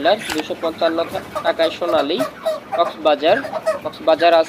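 A crowded flock of broiler chickens calling: many short, overlapping calls that rise and fall in pitch.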